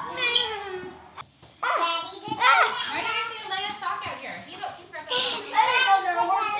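Children's high-pitched voices calling out as they play, with a short break about a second in.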